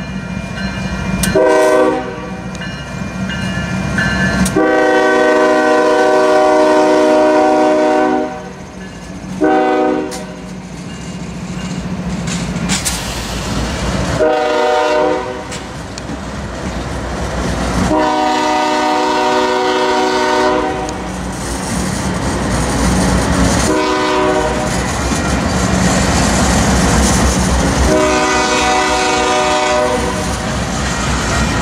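Union Pacific diesel freight locomotives passing close by. The multi-chime air horn sounds a series of short and long blasts over the steady rumble of the engines and wheels on the rails.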